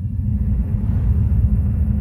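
Deep rumbling sound effect of an animated logo intro, swelling up to a peak about a second in and beginning to fade near the end.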